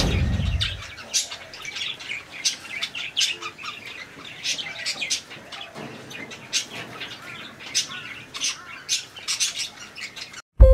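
Budgerigars chattering, a dense run of short, high chirps throughout. A low whoosh at the very start dies away within about a second.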